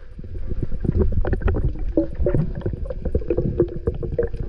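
Underwater sound picked up by a submerged camera while a freediver handles a speared fish: a dense low water rumble with many sharp clicks and knocks. From about two seconds in, a run of short steady tones steps up and down in pitch over it.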